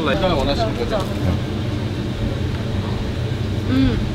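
Steady low rumble of street background noise, with short bits of speech in the first second and again just before the end.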